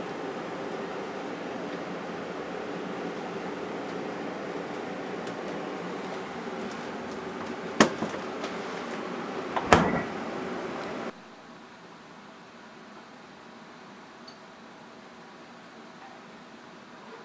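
Steady hum of an open refrigerator, with two sharp knocks about eight and ten seconds in. About eleven seconds in the hum drops away to quieter room tone.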